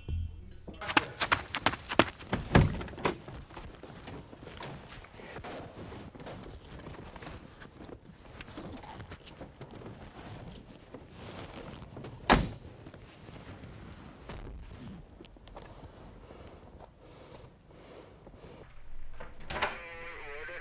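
Doors being handled: a cluster of clicks and knocks in the first few seconds, then one loud thunk about twelve seconds in, over quiet room noise.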